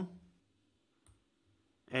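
Near silence broken by a single faint click about a second in, from working the computer while editing code; speech trails off at the start and resumes at the very end.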